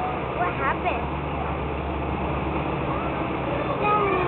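Pickup truck engine idling steadily while hitched to the pulling sled, with voices in the background.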